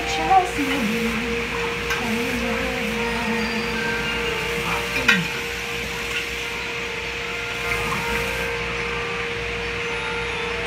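Dishes being washed by hand at a kitchen sink: tap water running, with clinks of dishes and glassware and two sharp knocks, one about half a second in and one about five seconds in.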